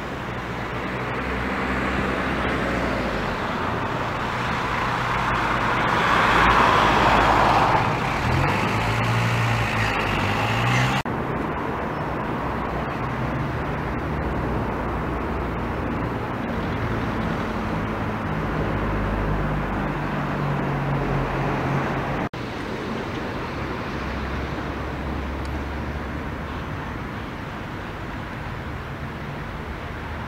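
Road traffic with vehicle engines running, a steady hum and rush that swells as a vehicle passes close about a quarter of the way in. The sound changes abruptly twice, about a third and two-thirds of the way through.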